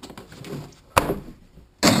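Hard plastic knocks and clatter as PVC pipe and fittings are handled on a wooden workbench. There is one sharp knock about a second in and a louder clatter near the end, over faint rustling of the fabric.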